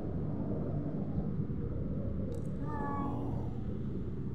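A toddler's brief high-pitched vocal sound about three seconds in, over a steady low outdoor rumble.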